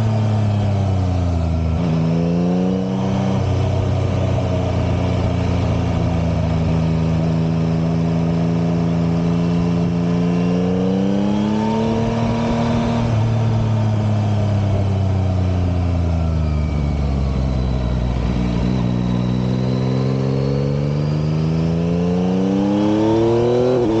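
Yamaha Tracer 9 GT's 890 cc three-cylinder engine heard from on board while riding: the revs drop about two seconds in, rise briefly around ten to twelve seconds, fall away for several seconds, then climb steadily as it accelerates near the end.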